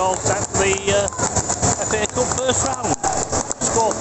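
A man talking close to the microphone over steady stadium crowd noise.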